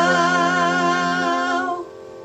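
A man, a woman and a girl singing together, holding the final note of the hymn ('now') with vibrato. The voices drop away about a second and a half in, and a fainter steady tone lingers after them.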